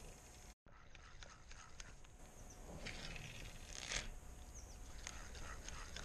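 Faint open-air lake ambience with a few short, high bird chirps, and two brief rustling noises about three and four seconds in.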